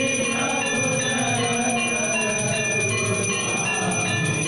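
Temple bells rung continuously for the aarti, many overlapping ringing tones at a steady level.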